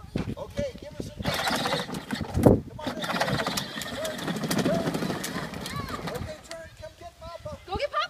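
Battery-powered ride-on toy pickup truck driving on asphalt: a rough, rattling rolling noise from its plastic wheels and motor for about five seconds, starting about a second in, with one sharper knock about two and a half seconds in.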